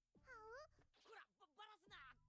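Very faint, high-pitched voices of anime characters talking, with one drawn-out sliding exclamation about half a second in.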